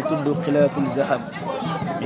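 A man's voice in a sing-song chant, with some syllables held on a steady pitch.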